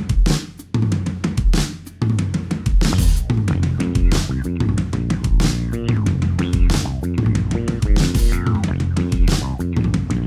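Rock band playing live in a studio: the drum kit plays alone at first, then electric guitars and a low bass line come in about two seconds in and the full band drives on with a steady beat.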